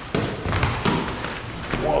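Several players jumping and scrambling for a tossed ball on foam floor mats: a run of thuds from landing feet and the ball striking hands, with excited voices.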